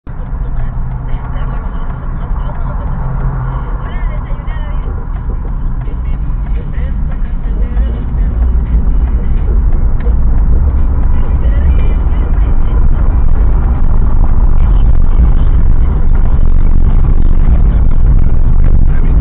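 Car interior rumble picked up by a dashcam: deep engine and road noise that grows steadily louder as the car moves through traffic, with faint speech and music underneath.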